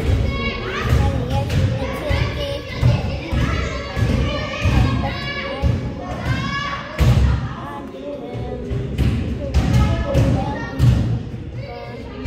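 A basketball bouncing and thudding on a hardwood gym floor in irregular thumps, as players dribble and shoot. Music and children's voices run underneath.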